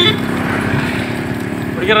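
Motorcycle engines running steadily close by, with a man's voice calling out near the end.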